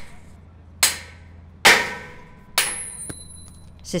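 Hammer blows on the steel connecting pins of a lattice crane jib section, driving the upper pins out: three sharp metallic strikes about a second apart, each followed by ringing.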